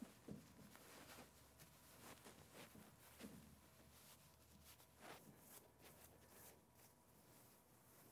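Near silence, with faint soft rustles here and there as a pleated silk veil is handled and pulled through.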